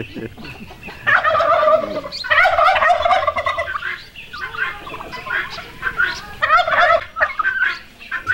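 Domestic turkey toms gobbling: several loud bursts of rapid, wavering calls, each up to about a second long, one after another.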